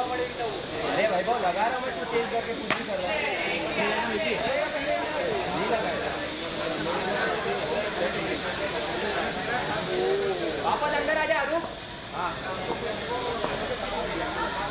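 Several people's voices shouting and chattering on a cricket court, with one sharp click about three seconds in.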